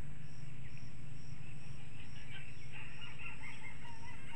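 Rural outdoor ambience: an insect chirping in a steady high-pitched pulse about twice a second over a low steady hum, with birds calling from about halfway in.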